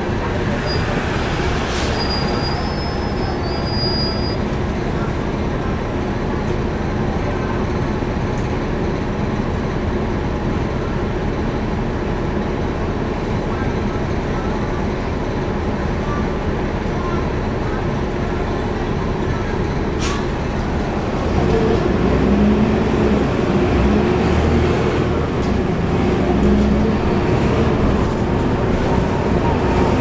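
Cummins ISL9 inline-six diesel of a 2011 NABI 40-SFW transit bus heard from inside the passenger cabin, running with its radiator fan on. About two-thirds of the way through a sharp click sounds, and the engine then gets louder as the bus accelerates, with a rising whine near the end.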